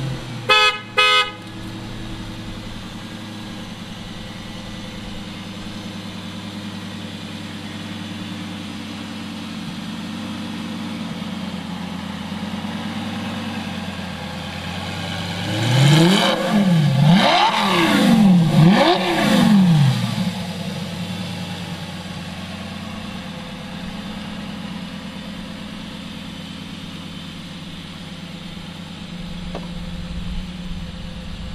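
Lamborghini Gallardo Superleggera V10 through an aftermarket LOC exhaust, idling steadily, then revved three times in quick succession about sixteen seconds in, each rev rising and falling, before settling back to idle. Two short beeps sound near the start.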